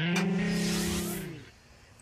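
A young woman's voice holding one long sung note, gliding up at the start and then steady, trailing off after about a second.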